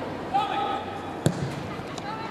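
A football kicked hard: one sharp thud of boot on ball about a second and a quarter in, just after a short shout from a player.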